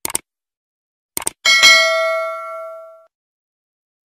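Subscribe-animation sound effects: two quick mouse clicks at the start and two more about a second in, then a bell ding that rings out and fades over about a second and a half.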